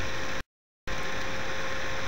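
Steady recording hiss with a faint electrical hum between narration lines, broken about half a second in by a brief drop to total silence where the audio is cut.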